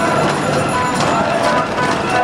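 Crowd of street protesters, with many voices talking and calling at once.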